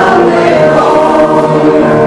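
Congregation singing a hymn together, the voices holding long notes that move from one pitch to the next.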